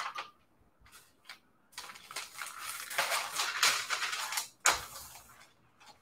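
Sheets of stiff, dried coffee-dyed paper rustling as they are handled and laid flat on a stack. A few light taps come early, and one sharper knock comes about three-quarters of the way through.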